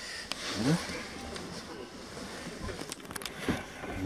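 Rustling of clothing and cloth seat upholstery as a person shifts about and settles in a car's back seat. There is a sharp click near the start and a quick run of clicks about three seconds in.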